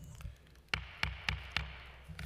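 Wooden gavel rapped four times in quick succession, about three knocks a second, calling the hearing to order, over a low room hum.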